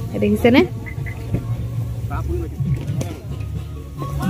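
A short spoken utterance about half a second in, then faint scattered voices over a low steady rumble.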